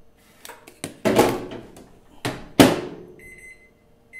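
Kenwood microwave oven being handled: a few knocks and rustles, then the door shuts with a sharp thump about two and a half seconds in, and a keypad beep sounds near the end.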